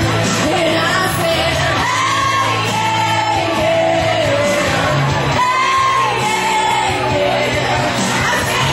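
Karaoke singing: a solo voice sings over a pop backing track. It has two long phrases of held high notes that slide down in pitch.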